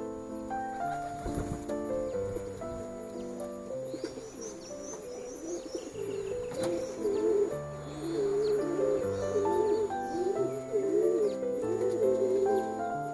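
A male sporting pigeon cooing over and over from about four seconds in, the coos coming closer together and louder in the second half, over background music with held notes.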